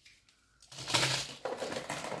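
Plastic and paper packaging rustling and crinkling, with small knocks, as products are handled inside an opened parcel. It starts about a second in, after a near-quiet moment.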